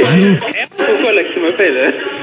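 Speech only: men talking on a phone call, in the same back-and-forth as the surrounding conversation.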